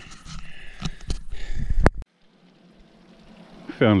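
Wind buffeting the camera microphone, with rustling and footfalls through dry grass and scrub as the hiker walks. It cuts off suddenly about halfway, leaving faint outdoor background until a man begins speaking near the end.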